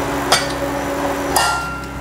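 Stainless steel pressure cooker's whistle weight being set onto the lid's vent: a sharp metal click, then about a second later a short metallic clatter with a brief ring.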